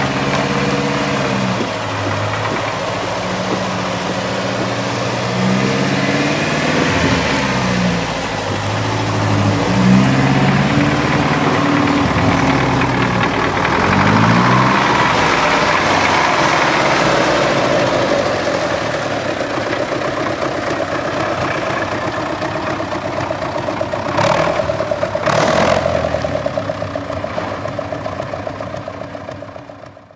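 Off-road vehicle engines running and revving, the pitch shifting and rising during the first ten seconds, then a steadier drone. Two sharp knocks come about 24 and 25 seconds in, and the sound fades out at the end.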